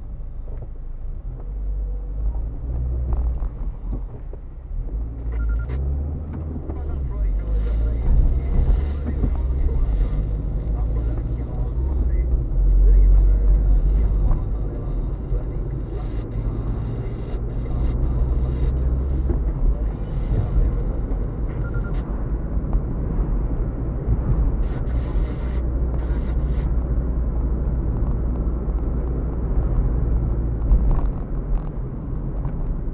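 Low, steady rumble of a car's engine and tyres heard from inside the cabin while driving on a city street, rising and falling a little with speed, with a few faint clicks.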